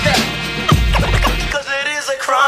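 Hip hop DJ mix with turntable scratching: quick sweeping scratches over a beat with heavy bass. About one and a half seconds in, the bass drops out and a wavering higher pitched sound is left.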